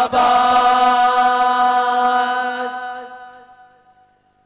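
A group of voices holding one long, steady note at the end of a chanted 'zindabad' line of a revolutionary group song, fading away over about three and a half seconds.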